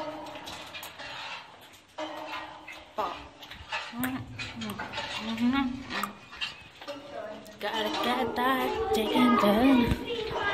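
Indistinct speech from more than one voice, loudest in the last two seconds.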